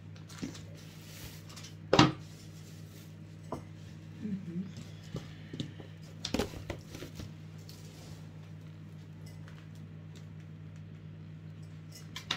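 Kitchen clatter of dishes and cutlery: one sharp knock about two seconds in, the loudest sound, then a few lighter clinks and taps, over a steady low hum.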